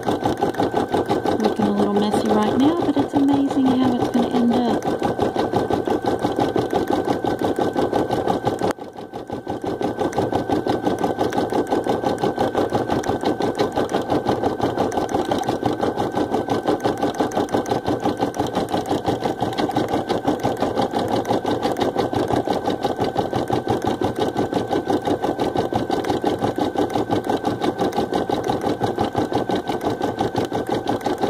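Baby Lock Ellure Plus embroidery machine stitching steadily at speed: a fast, even needle rhythm with a steady whine. About nine seconds in it briefly drops off and then builds back up to full speed.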